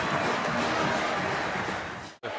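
Music with stadium crowd noise from a football broadcast, a steady wash that slowly fades near the end.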